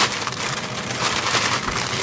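Continuous crackling and rustling noise made of many small clicks.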